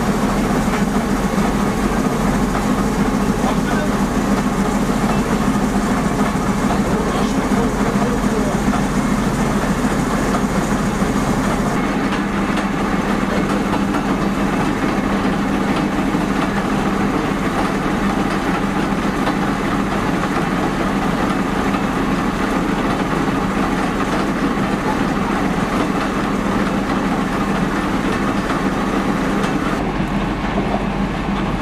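Fire truck engine and pump running steadily with a constant low hum, with people's voices mixed in.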